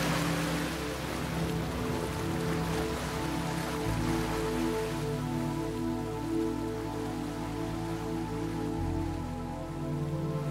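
Slow ambient background music of held chords, its bass note changing about four seconds in and again near the end, over a soft wash of water noise that thins out after the first few seconds.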